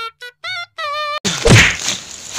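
Background music with a wavering held melody cuts off abruptly, and a moment later comes a single loud thud, the loudest sound here.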